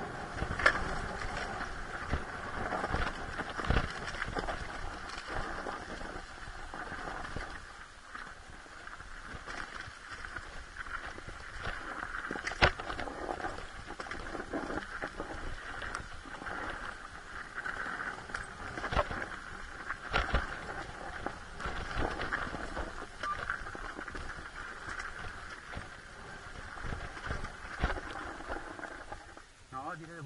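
Dirt bike engine running at low revs on a rough downhill trail, with irregular knocks and clatters from the bike jolting over bumps and rocks, a few of them sharp.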